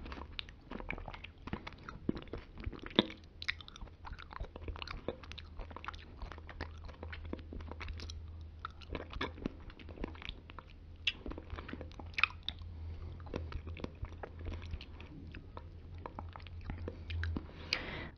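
Close-miked wet mouth sounds of a woman eating and licking yogurt: a quick, irregular stream of small clicks and smacks.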